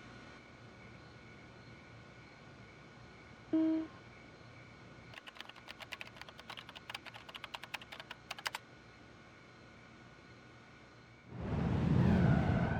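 Rapid typing on a computer keyboard, a quick run of key clicks lasting about three seconds. Before it comes a short, loud electronic beep, and near the end a loud swelling whoosh-like transition effect rises in.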